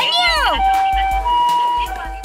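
Toy ambulance's electronic two-tone siren, set off by pressing the roof light bar: the Japanese ambulance 'pee-po' call, alternating between a higher and a lower tone about every half second.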